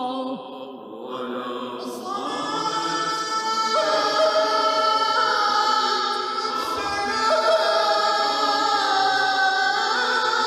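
Voices singing a slow Islamic religious chant in long, held notes. A brief lull comes just after the start, then the next phrase swells in.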